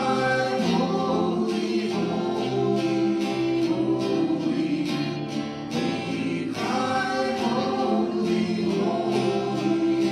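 Church worship band playing a slow gospel song, with acoustic guitar strumming and voices singing.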